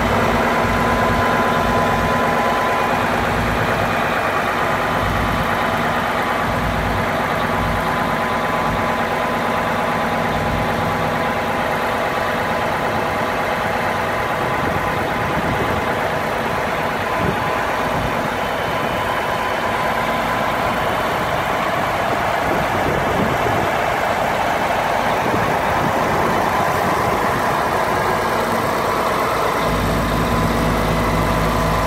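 Mercedes Actros 3236 K truck's diesel engine running steadily, driving the hydraulics as the concrete pump boom folds down.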